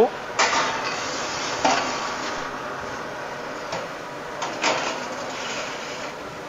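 Metal oven peel scraping and clattering on the deck of a bakery deck oven as a load of baked rolls is slid out, with several sharp scrapes over a steady hiss.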